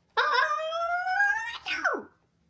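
A high-pitched, drawn-out howl-like vocal call that rises slowly in pitch, then drops steeply near the end, voiced for the Arlo dinosaur plush.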